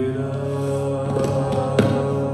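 Sikh kirtan: a male voice sings a shabad over held harmonium chords, with a tabla stroke near the end.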